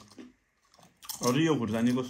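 Chewing on crisp fried potato chips. About a second in, a man's voice begins.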